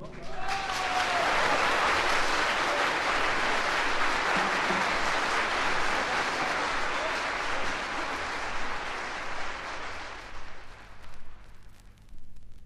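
Live audience applauding as a jazz piece ends, heard from a vinyl LP of a live concert recording. The applause starts as the music stops, holds steady, then dies away over the last couple of seconds, leaving record surface hiss and hum.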